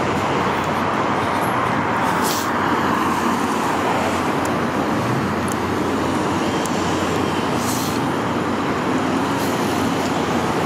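Steady freeway traffic noise, tyres and engines of passing cars blending into one even sound, with a couple of brief hisses about two and a half seconds in and near eight seconds.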